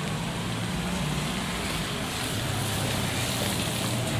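Street traffic on a wet road: a steady hiss of tyres and traffic with a low engine hum underneath.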